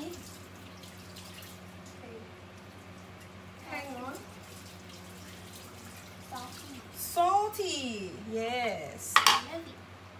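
Brief, indistinct voices, including a high child's voice near the end, over a steady low electrical hum. A single sharp clatter comes about nine seconds in.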